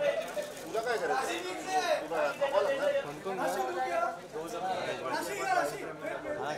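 Several people talking over one another: a murmur of overlapping voices with no single clear speaker.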